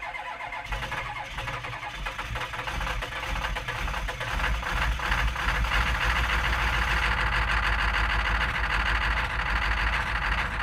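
A motor-driven machine running steadily with a fast, even pulsing and a strong low hum, growing louder about halfway through.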